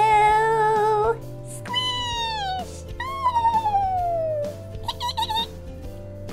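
Background music with high, wordless vocal sounds over it, each held or sliding downward in pitch, somewhat like meows. They come in four short phrases, the longest a slow falling glide in the middle, as a person gives the toys cute voices while they meet.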